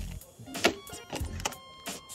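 Handling noise from the fan parts and their packaging: a few sharp clicks and rustles, the loudest about two-thirds of a second in. Background music comes in near the end.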